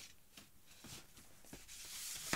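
Faint rustling and a few soft clicks of vinyl record sleeves being handled.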